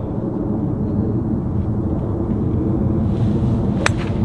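A three wood striking a golf ball: one sharp crack near the end, under a steady low rumble.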